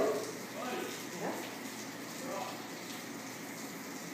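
Quiet room tone with a few faint, brief voice sounds, likely murmured speech, and no distinct non-speech event.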